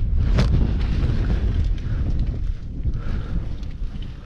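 Wind buffeting the camera microphone: a loud, uneven low rumble with a few faint clicks over it, easing slightly near the end.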